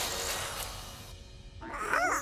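Cartoon magic sound effect: a soft whooshing puff that fades away over about a second as an object is conjured in a cloud of smoke, with light background music.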